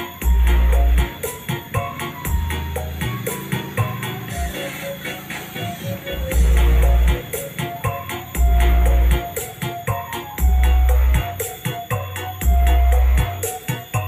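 Music with heavy bass played loud through a Bazooka 2.1 active subwoofer system with twin 8-inch drivers: a long, very deep bass note about every two seconds, over busy percussion.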